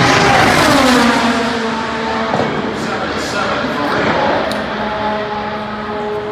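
An IndyCar's twin-turbo V6 passing at speed, its engine note dropping steeply in pitch as it goes by. It then carries on as a fainter, falling drone as the car runs away toward the turn.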